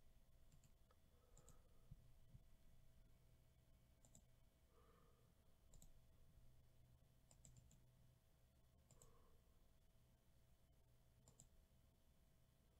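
Faint, sparse clicks of a computer mouse and keyboard, about eight scattered ticks over near silence.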